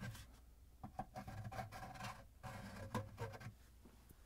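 A sponge scrubbing the plastic seal seat of a dishwasher pump housing clean, heard as faint, irregular rubbing and scratching strokes from about a second in until shortly before the end.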